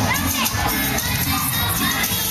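Latin dance music playing loud over a DJ sound system, with a crowd of guests shouting and whooping over it; one rising-and-falling whoop stands out near the start.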